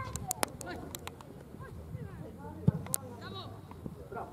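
Football being played: players calling out across the pitch, with sharp thuds of the ball being kicked, the loudest a shot about two and a half seconds in.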